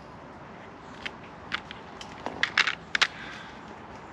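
Plastic spool of braided leader line being handled while line is pulled off it: a scattering of short crackles and clicks, most of them between one and three seconds in.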